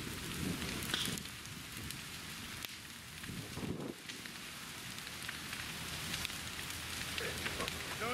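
A burning trailer and the debris around it crackling: a steady rushing noise dotted with many small sharp pops.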